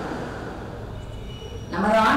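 A pause in a woman's talk, filled only by a steady low background hiss, with a faint thin high tone just before her speaking voice comes back near the end.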